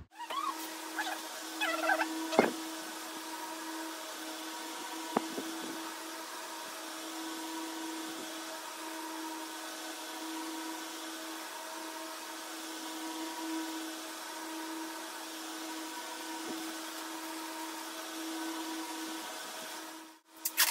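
A steady motor hum, with one constant low tone and a light hiss, holding even throughout. A few brief clicks come in the first few seconds.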